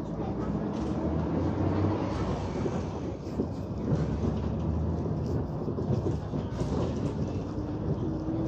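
Interior rumble of a 2017 Hyundai New Super Aerocity high-floor city bus driving, heard from the front of the cabin: a steady low engine and road drone with small knocks.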